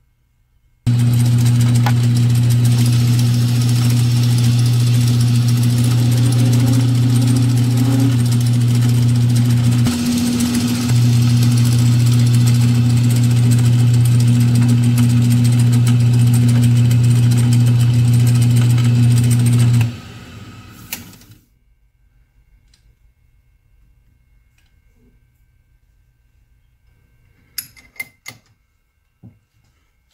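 Metal lathe running under cut, a steady motor hum with cutting noise, as a tool machines the end of a steel drawbar piece held in a four-jaw chuck. About twenty seconds in the sound falls away as the spindle is stopped and coasts down, and a few light clicks follow near the end.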